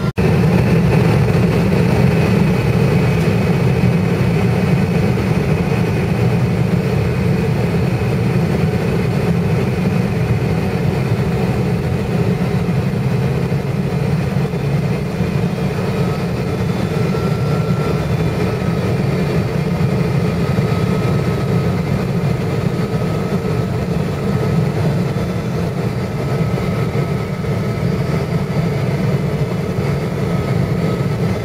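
Steady cabin roar of a McDonnell Douglas MD-11 trijet in descent, engine noise and airflow heard from inside the passenger cabin, deepest in the low range. A faint steady whine joins about halfway through.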